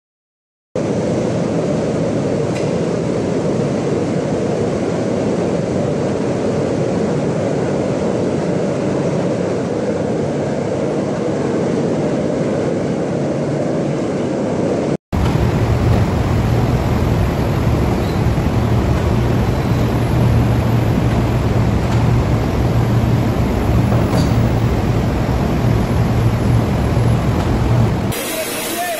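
Steady industrial noise of a heat-treatment shop with its furnaces and machinery running. About halfway a cut switches to a second shop recording, slightly louder, with a steady low hum under the noise.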